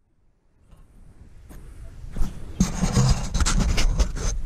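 Rubbing and scraping noise that fades in from silence and grows louder over the first two seconds or so.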